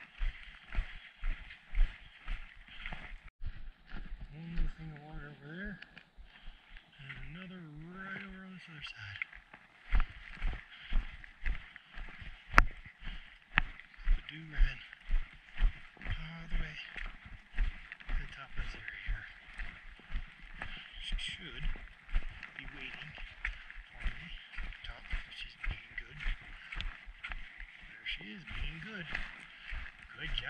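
Footsteps of a hiker walking on a rocky dirt trail, about two steps a second, over a steady hiss. A man's voice makes a few short, low, wordless sounds, and a single sharp click comes about halfway through.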